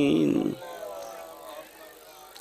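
A man's chanted recitation: a long held, wavering note ends about half a second in and trails off, followed by a quieter pause.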